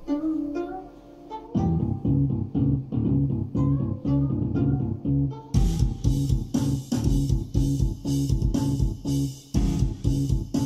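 SampleTank 3 multi-instrument MIDI patterns playing back from Pro Tools through studio monitors. It opens on sustained notes; a low repeating line comes in about a second and a half in, and a steady beat with sharp hits joins about five and a half seconds in.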